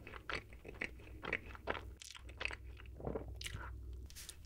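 Close-miked chewing of an Oreo ice cream sandwich: irregular soft crunches of chocolate cookie and ice cream in the mouth, with a louder crunch about three seconds in.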